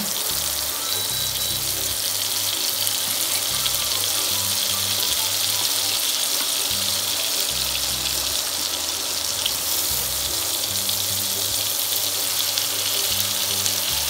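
Butter melting and sizzling in a non-stick frying pan, a steady hiss, with soft background music underneath.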